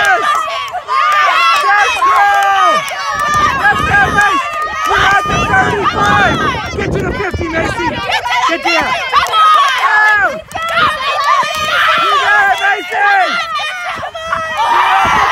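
Several girls' voices shouting encouragement over one another, loud and overlapping. A low rushing noise sits under the voices from about three to eight seconds in.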